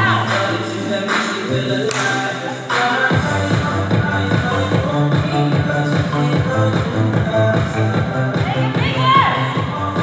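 Dance music playing for a fitness routine. About three seconds in, a steady driving beat comes in under the held bass notes.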